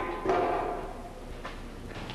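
Metal battery-compartment cover on a motor grader being opened: a knock, then a scraping slide with a faint metallic ring that dies away within about a second, and a light click at about a second and a half.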